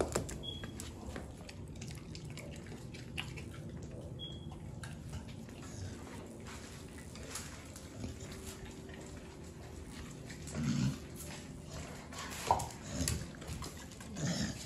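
American bully dogs making a few short, low vocal sounds, the clearest two near the end, over a faint steady hum.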